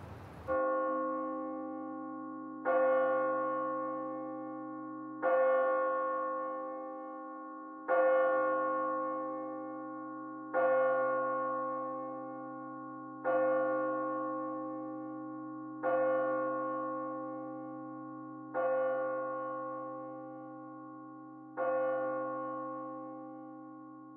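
A single bell tolling slowly: nine strikes of the same pitch, about every two and a half seconds, each ringing on and fading before the next, over a low steady hum.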